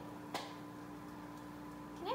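A steady low hum, with one faint click about a third of a second in.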